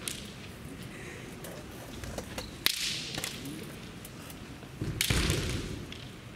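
Bamboo shinai tapping and clacking against each other as two kendo fighters probe for an opening, with one sharp crack a little before halfway. Near the end comes a longer, louder burst of noise as they close in and clash.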